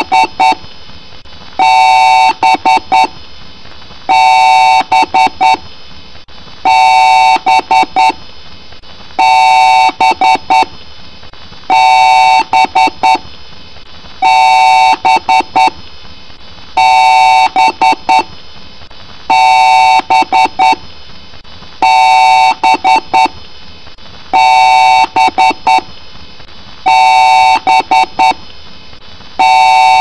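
Loud, buzzy electronic beeping that repeats about every two and a half seconds: one long beep, then a quick run of short beeps. It follows the long-and-short pattern of a PC's power-on BIOS beep code.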